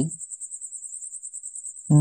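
A faint, high-pitched trill of rapid, even pulses that holds steady throughout, insect-like.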